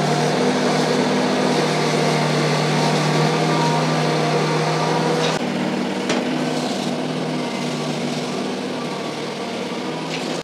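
Summit compact tractor engine running at a steady throttle while its front-loader bucket scrapes up dirt; the engine note drops slightly about halfway through, with a faint knock or two.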